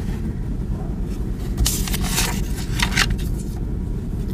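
Steady low rumble of room noise, with a few brief scuffs or rustles about two seconds in and again near three seconds.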